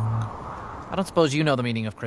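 A man singing the last held note of a short, sad Christmas song, then, about a second in, speaking a line.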